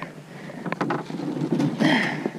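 Handling noise from someone moving about a plastic kayak and paddle: a few light knocks about a second in and a short rustle near the end.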